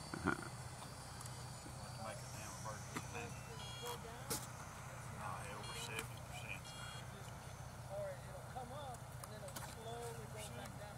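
Faint, distant voices of people talking over a steady low hum, with a few sharp clicks, the loudest just after the start and about four seconds in.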